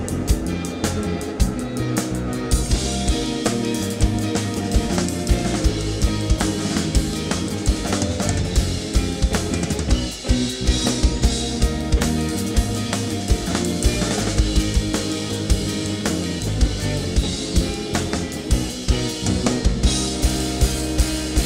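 Live rock band playing, with two electric guitars, electric bass and a drum kit. The kick and snare hit regularly, and the cymbals fill in the top end a few seconds in.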